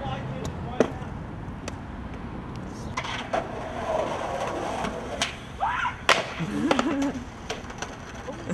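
Skateboard rolling on concrete, then sharp wooden clacks of the board hitting the ground, the loudest about six seconds in, as the skater jumps a stair gap and lands. Short shouts are heard around the impacts.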